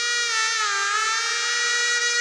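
Music: a reedy wind instrument holds one long note that dips a little in pitch about halfway through and comes back up.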